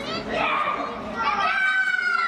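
Children's voices shouting and chattering together, high-pitched and continuous.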